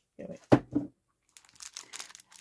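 Small clear plastic bag of beads crinkling as it is handled, a quick run of short rustles in the second half.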